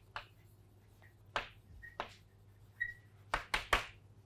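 Chalk tapping and scraping on a blackboard as words are written, with a few brief squeaks. A quick run of three taps comes near the end.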